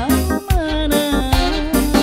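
A woman singing a tarling-dangdut song through a microphone with a live band. Her voice wavers in ornamented vibrato over steady drum strokes and bass.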